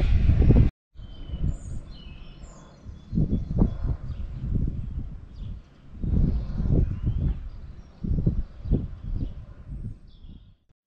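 Outdoor ambience of small birds chirping now and then, over low, uneven gusts of wind noise on the microphone that swell and fade several times.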